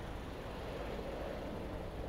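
Steady outdoor background noise, a faint even hiss with no distinct events.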